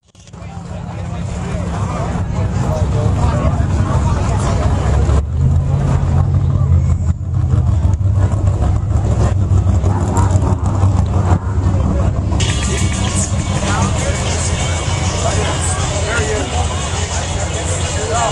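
Trophy Truck race engine idling with a deep, steady rumble, amid a crowd talking close by.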